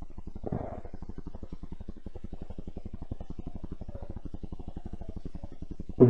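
A low, steady hum with a fast, even pulse, about ten beats a second, and one brief soft sound about half a second in.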